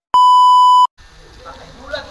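Test-tone beep from a colour-bar transition, edited into the video: a loud, steady, high-pitched electronic tone lasting under a second that starts and cuts off abruptly.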